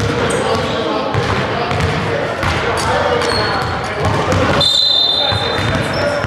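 Basketball game sounds in a reverberant gymnasium: a ball bouncing on the hardwood court and players' voices calling out. A brief high squeal is heard about five seconds in.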